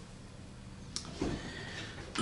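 A man clearing his throat behind his hand: a small click about a second in, then a short, low, muffled throat sound.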